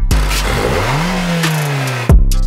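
A car engine revving: its pitch climbs steeply for about a second, then holds and slowly sinks as it eases off, with a rushing, whooshing noise over it.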